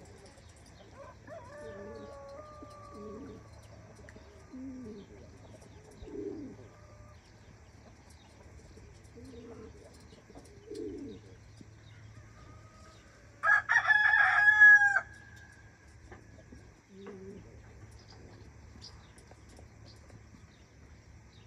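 Domestic pigeons cooing in soft, low notes on and off. About two-thirds of the way in, a loud, drawn-out call from another bird lasts about a second and a half. A fainter call of the same kind comes about a second in.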